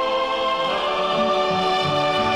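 Background music: sustained orchestral chords with choir voices, moving to a new chord a little under a second in.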